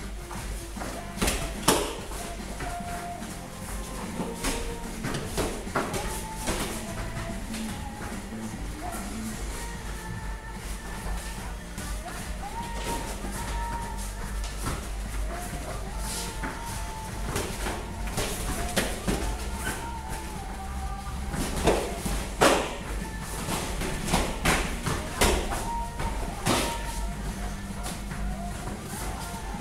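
Background music, with scattered sharp thuds of gloved punches and kicks landing. The loudest are two hits close together about three-quarters of the way in.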